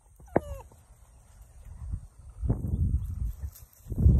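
A retriever puppy gives one short, high whine that falls in pitch, just after a sharp click near the start. About halfway in, low rumbling and scuffing noise begins.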